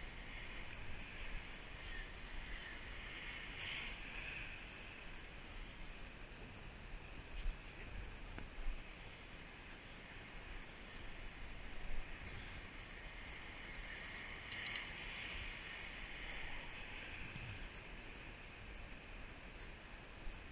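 Steady outdoor background of nearby road traffic, with three sharp knocks in the middle.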